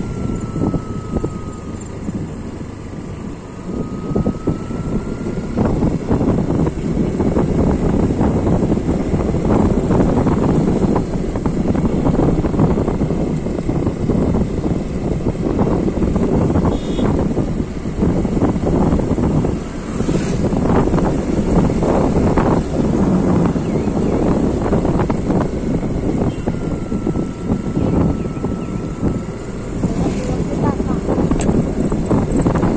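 Moving vehicle's running noise mixed with heavy wind buffeting on the microphone, loud and uneven, dipping briefly about three seconds in and again around twenty seconds in. A faint thin whine sounds near the start and again near the end.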